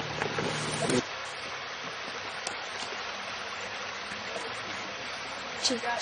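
Steady rushing of a woodland stream, a constant even noise with no clear strokes or rhythm. A faint voice and low hum are heard in the first second, and a brief sound comes near the end.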